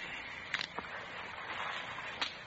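Two faint clicks a quarter second apart over the steady hiss of an old radio recording: a sound effect of handcuffs being snapped onto a prisoner.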